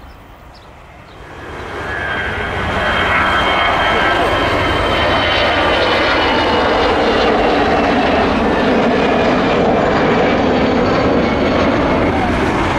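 Airbus A320 jet engines at takeoff thrust as the airliner lifts off and climbs away. The engine noise swells sharply over the first two to three seconds, then holds loud and steady, with faint high whining tones slowly falling in pitch.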